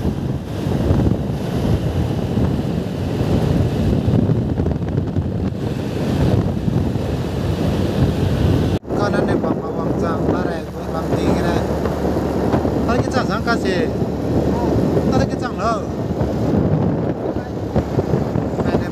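Wind rushing hard over the microphone of a moving two-wheeler on the road, a steady low rumble with the vehicle's running noise underneath. It cuts off abruptly about nine seconds in and picks up again at once.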